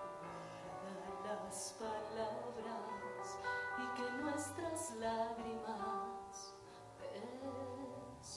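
A woman singing a slow song live over held keyboard chords and a band accompaniment, her sibilant consonants cutting through now and then.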